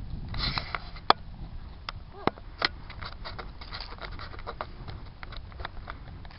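Horse being ridden at a walk: irregular clicks and knocks of hooves and tack over a steady low rumble, with a short breathy rush about half a second in.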